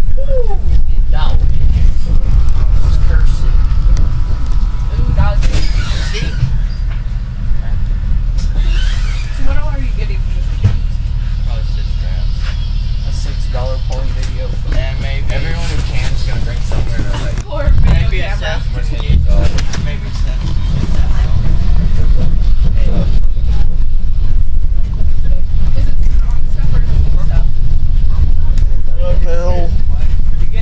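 School bus running on the road, a loud, steady low rumble of engine and road noise heard from inside the cabin, easing off for a stretch in the middle before rising again, with passengers' voices chattering over it.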